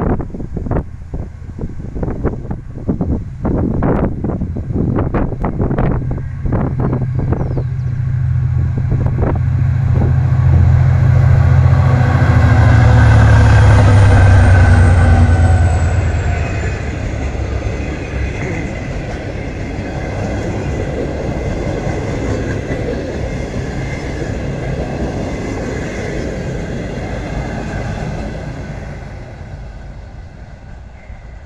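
EMD GT22CW diesel locomotive's 12-cylinder two-stroke engine approaching and passing close by, its low drone loudest about halfway through and falling in pitch as it goes by, followed by the passenger coaches rolling past on the rails and fading away. Gusts of wind hit the microphone in the first several seconds.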